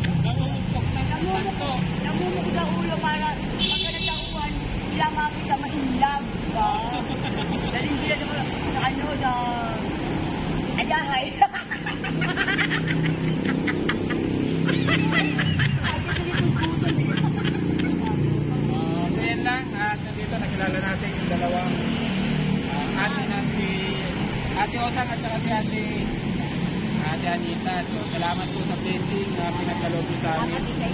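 People talking and laughing over the steady noise of road traffic passing close by. A single sharp click about eleven seconds in is the loudest moment.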